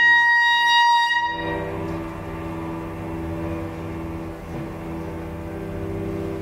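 Clarinet holding a long, loud high note that stops about a second and a half in, followed by quieter low held notes from the trio's cello and clarinet with piano.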